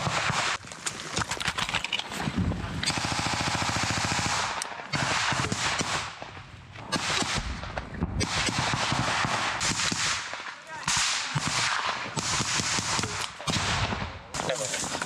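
Close automatic gunfire in a firefight: several rapid bursts of rifle and machine-gun fire with short pauses between them.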